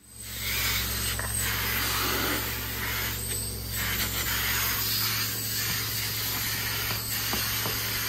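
Upholstery extraction machine running, a steady hum and hiss from its vacuum, as a hand wand is drawn across a wet fabric chair seat in repeated strokes, sucking the cleaning solution back out of the cloth.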